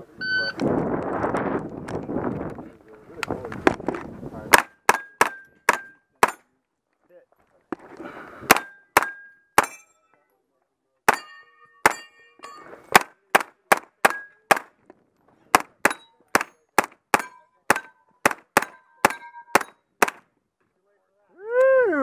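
A shot timer's short start beep, then a 9mm AR-style pistol-caliber carbine firing strings of fast shots, about three a second, each hit answered by the clang and ring of steel targets. There are pauses of a second or two between strings, and about forty shots in all.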